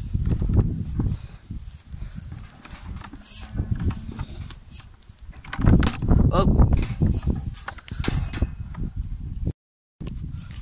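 Sheep jostling and feeding at a trough of meal, with wind and handling rumble on a phone microphone. A louder wavering call comes about six seconds in, and the sound drops out briefly near the end.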